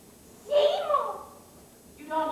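A single short vocal utterance by a stage actor, about a second in, falling in pitch like a drawn-out "oh".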